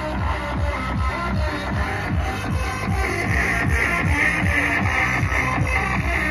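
Loud electronic dance music with a fast, steady, heavy bass beat, played through a car audio system mounted in an open hatchback boot.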